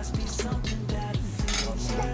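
A metal fork clinking and scraping on a ceramic plate, several sharp clinks with the loudest about one and a half seconds in, over background pop music with a steady beat.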